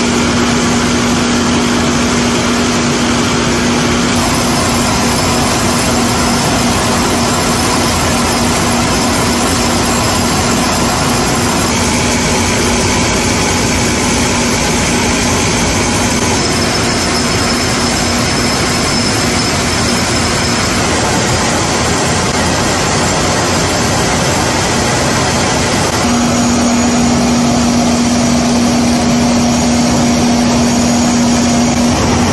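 Folder-gluer carton machine running steadily: a dense, even machine noise with a steady low hum that drops out about four seconds in and returns near the end.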